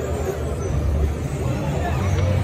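Schwarzkopf Monster Type 3 polyp ride running: a steady low rumble of its machinery and gondolas sweeping past close by.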